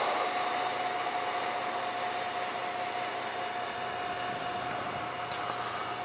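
A steady mechanical hum with one constant whining tone, growing slowly quieter.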